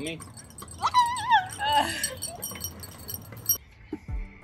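A person's voice making a high, wavering call, about a second in and lasting about a second, amid a group moving about.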